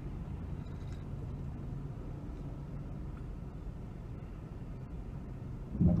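Steady low rumble heard from inside a car cabin, with a faint hum: a vehicle idling and traffic going by.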